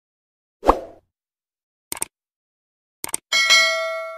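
Subscribe-animation sound effects: a soft pop, then two pairs of quick clicks, then a bell chime that rings out and fades.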